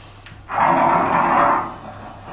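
Free-improvised music for percussion and live electronics: a loud, rough sound without a clear pitch comes in about half a second in, holds for about a second, then fades.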